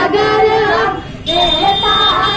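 Children singing a song together into microphones, with a brief break about a second in before the singing picks up again.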